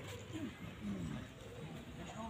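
Distant shouting voices carrying across an open field, a few drawn-out calls falling in pitch, over a steady outdoor background hiss.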